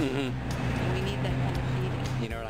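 A motor vehicle engine running nearby with a steady low hum, under faint voices.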